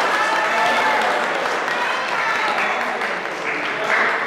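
Audience applauding steadily, with voices over it.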